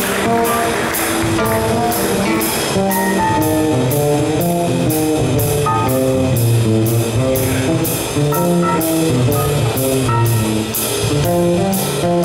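Live jazz band playing: a guitar carries a single-note melodic line over a moving bass line, keyboard and drum kit. A cymbal keeps a steady beat about three strokes a second.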